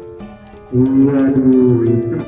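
A man's long, low drawn-out shout, held for about a second from a little after the start, over music playing in the background.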